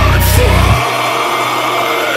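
Heavy metal recording: loud, dense band sound with a heavy low end, then under a second in the low end drops out, leaving a sustained note that slowly rises in pitch.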